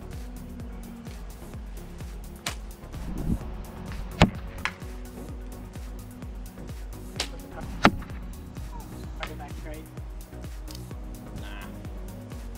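Compound bows being shot: several sharp snaps of released strings, the two loudest about four and eight seconds in, over background music with a steady beat.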